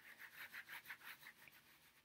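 Faint, quick rubbing strokes of a hand working through short, tightly curled hair, about six or seven strokes a second, dying away after about a second and a half.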